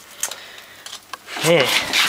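Faint rustling and a couple of light clicks as coils of old insulated copper house wiring are handled, then a spoken "yeah" near the end.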